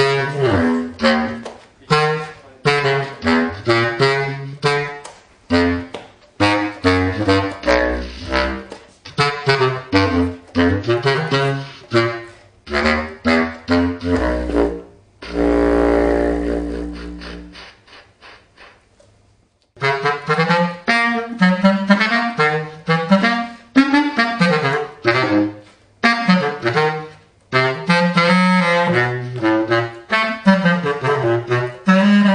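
Selmer Paris Privilege bass clarinet played solo in quick phrases of short notes. About fifteen seconds in, a long low note is held and fades away, followed by a brief pause, and then the fast phrases resume.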